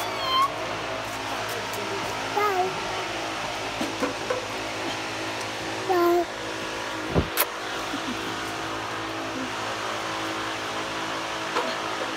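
Toddlers making short high-pitched squeals and babbling sounds, about three brief calls that rise and fall in pitch, over a steady background hum. A single sharp click about seven seconds in.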